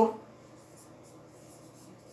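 Dry-erase marker writing on a whiteboard: a run of faint short strokes as letters are drawn.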